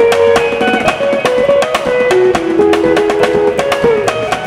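Electric guitar picking a single-note lead melody, stepping from note to note, over a steady drum kit beat.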